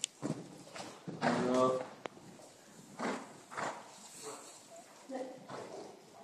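Hoofbeats of a horse cantering over the sand footing of an indoor riding arena, with a person's voice calling out one drawn-out word about a second in.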